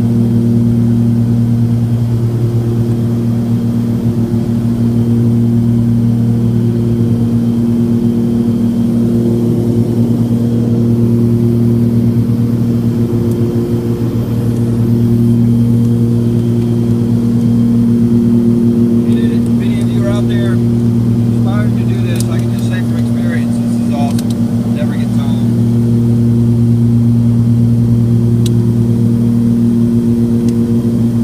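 Cessna 340's twin piston engines and propellers droning steadily, heard inside the cabin, with a slow regular throb about every second and a half.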